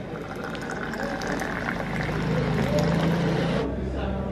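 Tea poured in a steady stream from a metal teapot into a glass, getting louder as the glass fills and stopping suddenly near the end.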